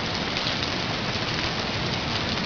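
A steady, even hiss like heavy rain, with no pitch or rhythm: a rain sound effect laid under the end card.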